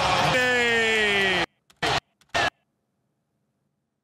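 A man's voice holding one long drawn-out shout that slowly falls in pitch, cut off suddenly about one and a half seconds in. Two short bursts of sound follow, then dead silence.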